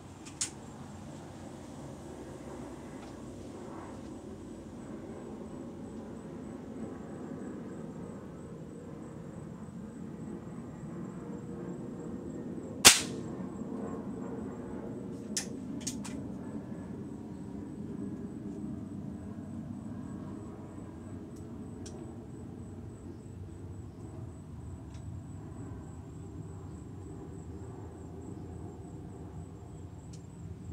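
A pellet air gun firing once about thirteen seconds in, a single sharp crack that is the loudest thing here. A lighter click comes near the start and a couple more follow shortly after the shot, over a steady low background.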